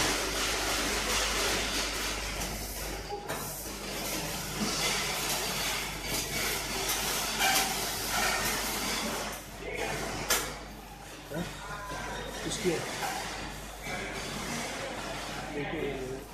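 Steady kitchen background noise: a low hum under a broad hiss, with scattered light knocks from handling and faint voices in the background.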